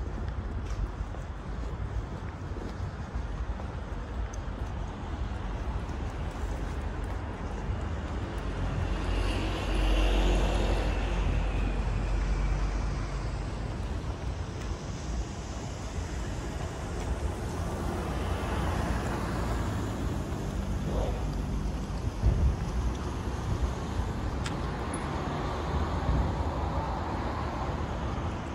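Street traffic: a steady hum of road noise with cars passing, the loudest pass swelling about ten seconds in and others passing later.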